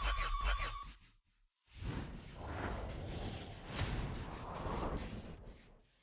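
Cinematic sound design under a dance performance's intro: a short burst with a held high tone that cuts off suddenly about a second in, then after a brief silence a noisy texture that swells and falls a few times and dies away just before the end.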